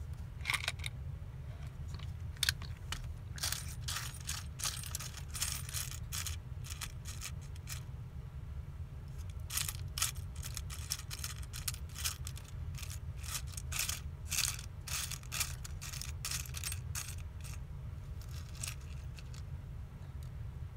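Small craft supplies being handled and rummaged through on a tabletop: an irregular run of light clicks, taps and crinkly rustles in clusters, over a steady low hum.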